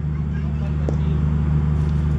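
Steady low hum with a faint even background hiss.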